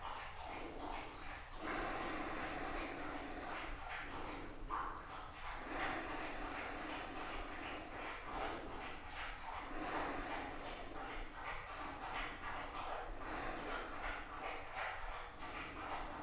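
Audible breathing in a steady rhythm: a run of noisy breaths, each about one to two seconds long with short pauses between them.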